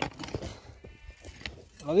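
Hand hoe chopping and scraping into dry, stony soil: a few light knocks and scrapes, much quieter than the voice that comes in near the end.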